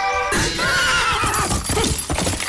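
A horse whinnying, starting suddenly about a third of a second in, with a quavering pitch that falls away; music plays beneath it.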